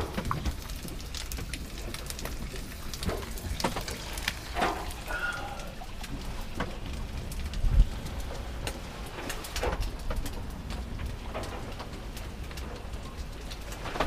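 Wind buffeting the microphone in a sailing yacht's cockpit at sea, with scattered clicks and knocks from the boat's gear. A short creak comes about a third of the way in, and a heavy thump just past halfway.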